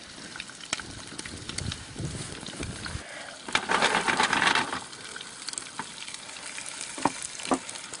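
Quail pieces sizzling in oil in a frying pan on a portable gas stove, a steady sizzle with scattered light clicks. It grows louder for about a second a little before the middle.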